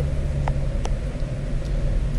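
Steady low background rumble, with two faint clicks about half a second apart.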